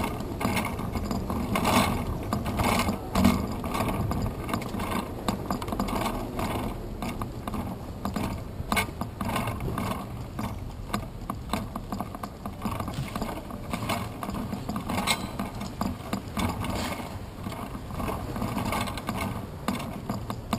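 Bicycle riding over city pavement, heard through a GoPro Hero 2 mounted on the bike: steady irregular rattling and clicking from the bike and camera mount over a low road rumble.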